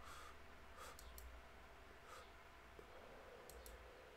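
Near silence: quiet room tone with a few faint clicks, one about a second in and a small cluster near the end, such as a computer mouse makes while the video is scrubbed back.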